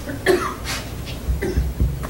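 A person coughing briefly, a couple of short bursts within the first second, over a low room rumble.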